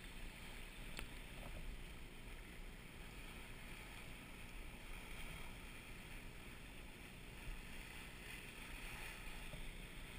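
Faint, steady rush of wind and water around a sailboat under sail, with wind on the microphone, and a single sharp click about a second in.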